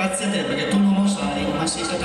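A man speaking Italian into a handheld microphone, his voice amplified through a public-address system.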